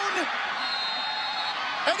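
Steady stadium crowd noise at a college football game as a pass is thrown into the end zone, with a thin, steady high tone for about a second in the middle.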